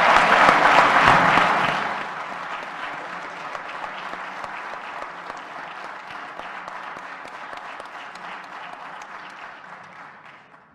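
Parliament deputies applauding together, loud at first, then fading steadily after about two seconds as the clapping thins out.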